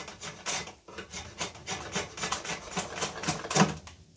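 A dull drawknife shaving the side of an Osage orange bow stave in a quick, irregular run of short scraping strokes.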